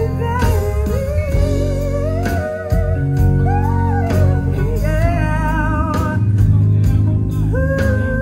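Live concert music: a woman singing into a microphone in long, wavering runs over a band or backing track with heavy bass, heard loud through the venue's PA.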